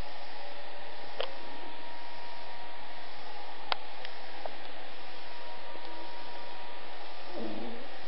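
A steady, even hiss with a couple of faint clicks, about one and four seconds in, and a brief faint low sound near the end.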